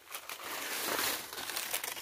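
Footsteps crunching through dry fallen leaf litter, a dense crackling of brittle leaves underfoot.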